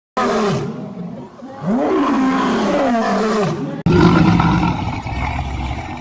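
Lion roaring: long, low calls that rise and fall in pitch, then an abrupt break about four seconds in, followed by a deeper, steadier roar.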